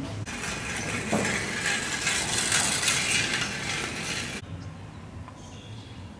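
Outdoor street noise: a loud, even hiss that swells and then fades, cut off abruptly about four and a half seconds in, leaving quieter outdoor ambience.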